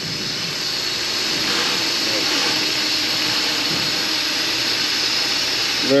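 Vacuum oil extractor sucking engine oil and air up a thin tube from the oil filter housing, a steady hiss.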